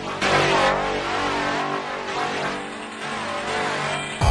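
Loud electronic music: a dense synth passage of wavering, gliding tones with an engine-like, revving character.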